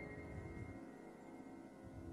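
Yamaha grand piano notes ringing on and slowly fading after the last high note of a rising run, with no new notes struck.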